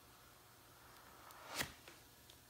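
Plastic putty board dragged through a layer of silicone glue on a leather seat and lifted off: a short scrape that swells into a sharp click about one and a half seconds in, then a fainter click.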